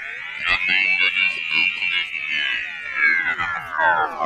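A slow electronic pitch sweep in the music: a dense chord of layered tones glides up to a high peak about one to two seconds in, then slowly falls again, with a few sharp clicks over it.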